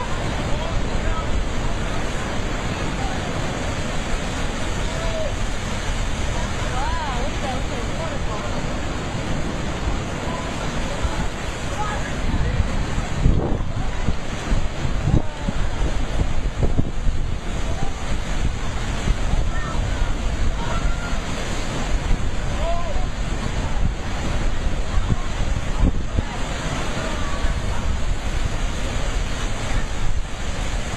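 Heavy sea waves surging over a rock shelf and flooding a natural rock pool, seawater rushing in and pouring back off the ledges in a steady roar of surf. Wind buffets the microphone.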